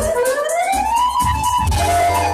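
Live lăutari band music with accordion. A lead melody line slides upward in pitch by about an octave over roughly a second, like a siren, then holds the top note over steady bass.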